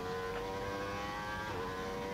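Racing motorcycle engine at high revs, heard onboard, its pitch climbing under acceleration. A quick upshift about one and a half seconds in drops the pitch briefly before it climbs again.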